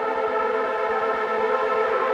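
Electronic dance music from a deep/progressive house mix: a sustained synthesizer chord of many steady, held tones, with no clear beat.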